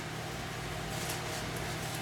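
Steady low hum and hiss of a small room's background noise, with no speech.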